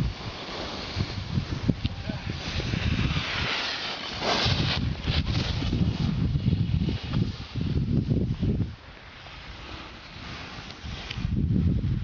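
Wind buffeting the microphone of a camera carried by a moving skier, with the hiss of skis sliding and scraping over snow. The buffeting drops for about two seconds near the end, then picks up again.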